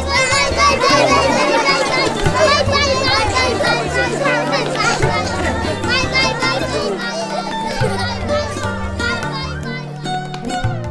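Many children's voices chattering and calling out at once, over background music with a repeating bass line.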